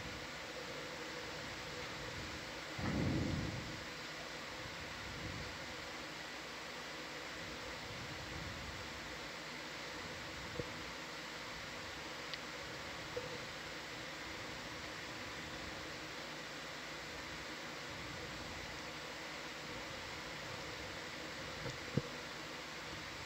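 Steady hiss with faint electronic hum tones from the ROV control room's audio feed, with a short low rumble about three seconds in and a few faint clicks later.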